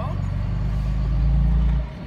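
Vehicle engine running, heard from inside the cabin as a steady low drone. It swells in the second half, then drops off sharply just before the end.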